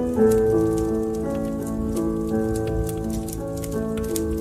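Instrumental music with slow, held chords, over a crackling wood fire in a fireplace: many small sharp pops and clicks scattered through it.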